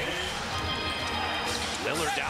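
Basketball game broadcast audio: steady arena crowd noise with a basketball being dribbled on the court.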